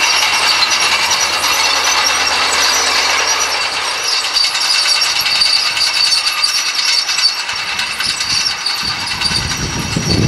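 Fiat 120C crawler at work pulling disc harrows: a steady, dense metallic clanking and rattling from its steel tracks and the discs over the engine, with a deeper rumble coming in near the end.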